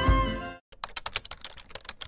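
Film-trailer music fades out in the first half second. After a brief gap comes a fast, irregular run of computer-keyboard key clicks, about a dozen a second: a typing sound effect.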